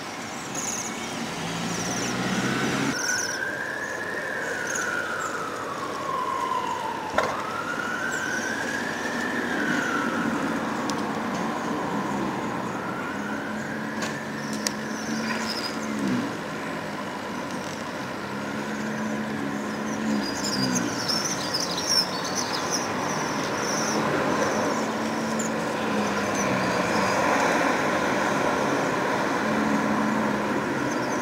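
Emergency-vehicle siren wailing, its pitch rising and falling slowly about every three to four seconds.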